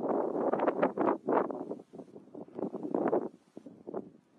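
Gusting wind buffeting the microphone during a heavy snowstorm, coming in loud, irregular rushes that ease off near the end.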